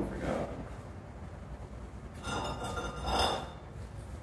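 A light clink of hard objects with a brief ringing, a little over two seconds in, over low room noise.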